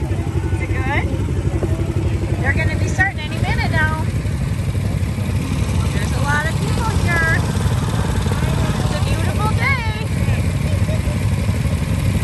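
Small youth ATV engines idling steadily, with people's voices coming in now and then over them.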